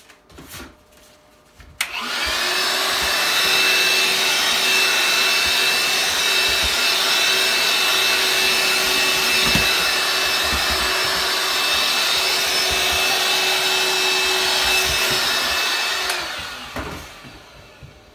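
Vacuum cleaner switched on about two seconds in and running steadily, a rushing of air over a high whine, as it sucks debris off a cutting mat. It is switched off at about sixteen seconds and winds down.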